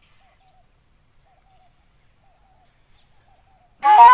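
A pause in a solo Fula flute piece, holding only a few faint short chirps, before the side-blown flute comes back in loudly near the end with a note that slides up.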